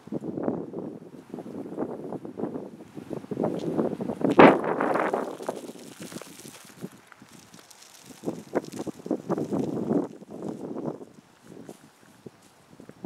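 Gusty wind buffeting the microphone, mixed with irregular crunching on gravel. The loudest burst comes about four and a half seconds in.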